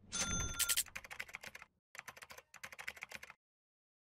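Graphics sound effect: a low thump with a short bright ding, then rapid keyboard-like typing clicks in about three bursts. It cuts off about three and a half seconds in.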